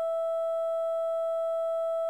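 A single wave cycle looped into a steady pitched tone on the note E5, with a fainter overtone an octave above.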